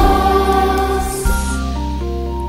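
Children's choir singing with a keyboard accompaniment; the voices end about a second in and the keyboard carries on alone with held notes.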